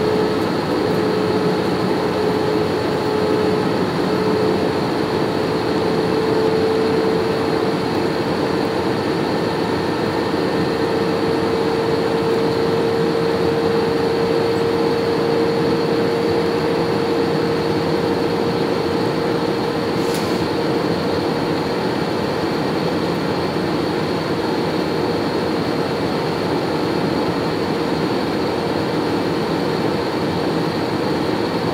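Airliner cabin noise on approach to landing: a steady drone of engines and rushing air, with a humming tone whose pitch edges up a few seconds in and then holds.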